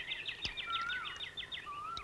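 Birds chirping quietly: a quick, even series of chirps, about seven a second, with a short whistled note about a second in and another near the end.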